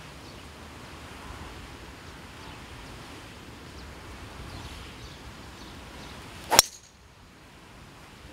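Golf driver striking a ball off the tee: one sharp crack about six and a half seconds in, a well-struck drive, over faint outdoor ambience.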